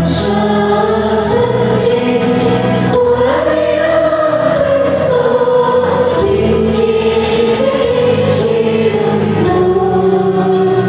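Church choir singing a slow liturgical hymn in long, held notes over a steady low accompaniment that changes chord a few seconds in and again near the end.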